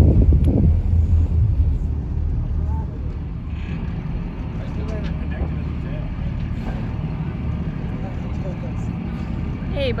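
A boat's motor runs with a steady low hum, slowing and dropping in level about two to three seconds in and then holding at a low, steady idle as the boat eases up.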